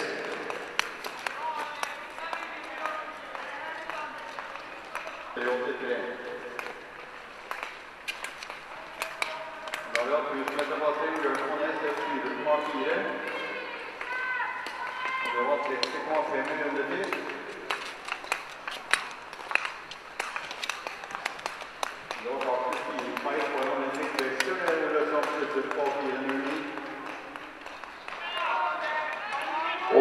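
Speech, quieter than the commentary around it, in stretches with pauses between, and scattered sharp clicks throughout.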